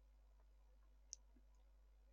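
Near silence, with a single faint mouse click about a second in.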